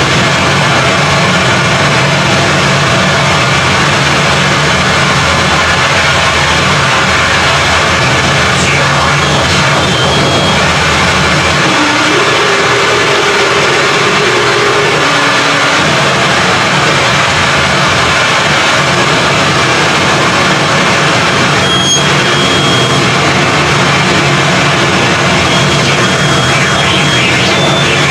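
Harsh noise music from a case of chained effects pedals and small synth modules: a loud, dense, unbroken wall of noise. A held mid-pitched tone rises out of it briefly about halfway through, and short high whistling tones cut in around a third of the way in and again near the end.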